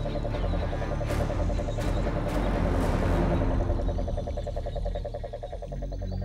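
Cane toad calling: a long, low, even trill that runs on and stops shortly before the end, over a low background rumble.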